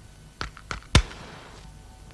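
Three short, sharp knocks within about half a second, the third the loudest with a brief ring after it, over a faint low hum.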